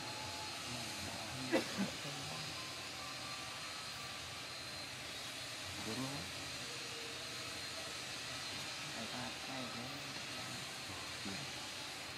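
Steady background hiss with a faint, high, steady whine, broken by a few faint short voice-like calls about a second and a half in, about six seconds in, and again near the end.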